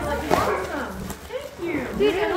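Several people's voices talking over one another, with high rising-and-falling calls about a third of a second in and again near the end.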